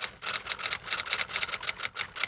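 Typewriter key-click sound effect, a fast even run of about seven clicks a second, timed to on-screen text being typed out letter by letter.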